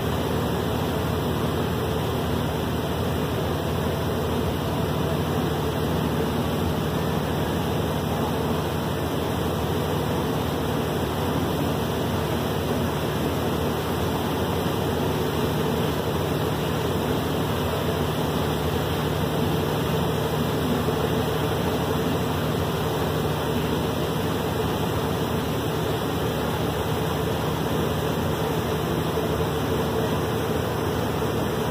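Heavy rain falling steadily onto the river, mixed with the steady drone of the boat's engine as it runs under way.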